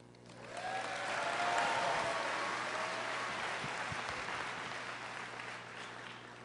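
Audience applauding. The clapping swells in the first second or so, then slowly dies away.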